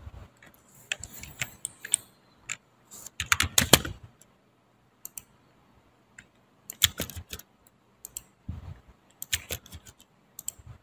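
Computer keyboard typing in several short bursts of key clicks with quiet gaps between, the loudest cluster about three and a half seconds in: drawing commands and distances being keyed into AutoCAD.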